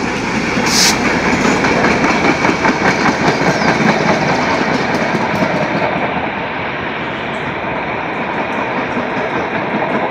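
Passenger coaches of a diesel-hauled train rolling past close by, their wheels rumbling and clicking over the rail joints, with the EMD G22CU locomotive's engine moving on ahead. The clicking is densest in the first half, and there is a short hiss about a second in.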